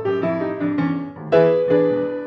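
Grand piano playing an eight-bar blues with no singing: a short run of notes over sustained bass, then a louder chord struck about one and a half seconds in.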